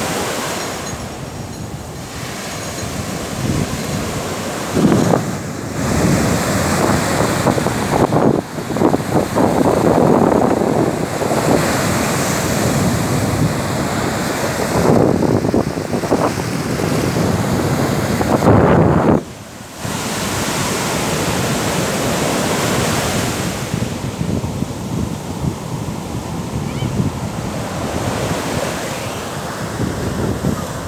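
Sea surf breaking close by and washing up the sand, swelling in surges every few seconds, with wind buffeting the microphone.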